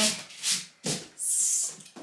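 A hand brushing across a desk mat, making a few short, soft rubbing hisses; the longest comes a little past the middle.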